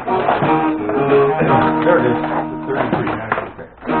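Acoustic guitar being played, chords strummed and left ringing, with a dip in loudness shortly before the end.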